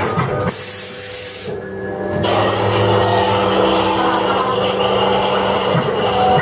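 A hiss of air sprays for about a second, starting about half a second in, typical of a scare-attraction air-blast or fog jet. Then a loud droning background soundtrack with steady low tones takes over.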